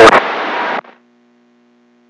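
Radio receiver hissing with static for under a second as a transmission drops off, then the squelch closes, leaving only a faint low hum.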